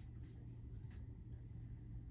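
Faint scratching of a pen on paper over a steady low room hum.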